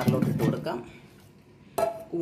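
Chopped beetroot pieces tipped from a bowl into a steel mixer-grinder jar, clattering against the metal. A single sharp knock comes near the end.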